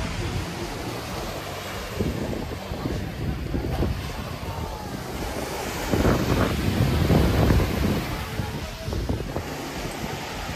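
Surf breaking on a sandy beach, with wind buffeting the microphone in low gusts that are loudest about six to eight seconds in.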